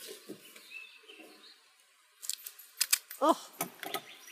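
Duct tape being pulled off its roll: a quick cluster of short, sharp crackling rips a little over two seconds in.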